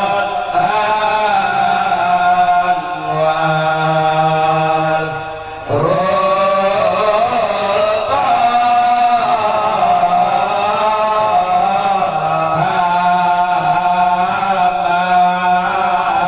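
A group of men chanting together in long, held notes, amplified through handheld microphones. The chant dips briefly in volume about five seconds in, then a new phrase starts on a rising note.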